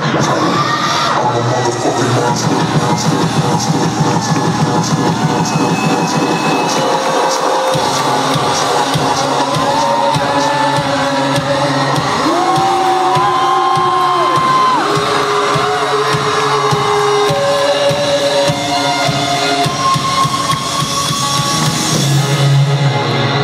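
Indie rock band playing live through a concert PA, recorded from the audience, with a steady beat and held notes; the crowd cheers over the music.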